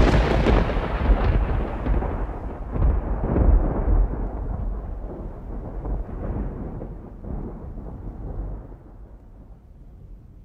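Thunder: a loud crash at the start, then a deep rolling rumble that swells again twice and slowly dies away.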